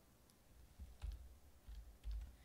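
A few faint computer mouse clicks against near-silent room tone.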